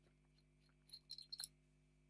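Near silence, with a few faint small clicks about a second in as the fountain pen's barrel is unscrewed from its section.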